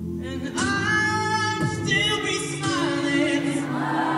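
A college a cappella group singing unaccompanied: a male lead voice holds long sustained notes over the backing singers' steady vocal chords.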